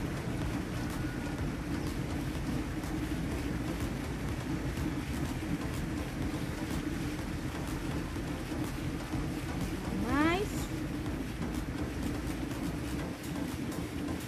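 Steady low hum over an even rumbling outdoor background, with one quick rising whistle-like call about ten seconds in.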